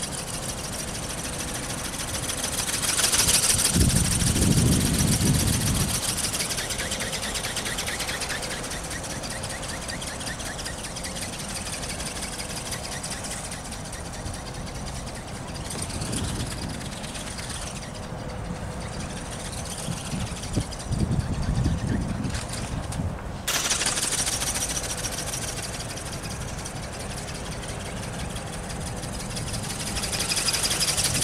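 Electric ornithopter in flight: its brushless motor and gear train whir steadily as the wings flap. Wind gusts hit the microphone hard about four seconds in and again around twenty-one seconds.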